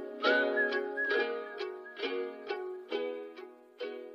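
Plucked banjo riff of a country-trap track playing on its own, without vocals, about two notes a second, with a faint high held tone near the start. It grows quieter throughout and stops just after.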